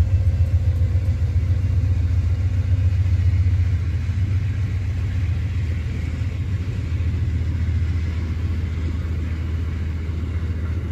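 Amtrak passenger coaches rolling past on the track, a steady deep rumble that eases a little about halfway through.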